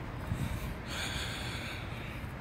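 A person's breath rushing near the microphone about a second in, lasting nearly a second, over a steady low rumble.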